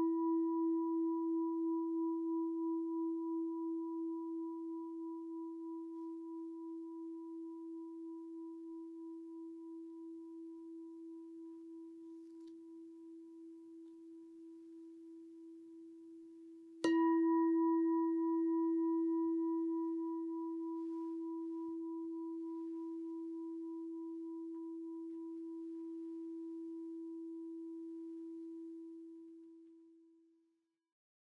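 A singing bowl ringing with a low steady tone and a slow wavering pulse, fading. It is struck again about 17 s in, rings out once more and dies away near the end, closing the meditation.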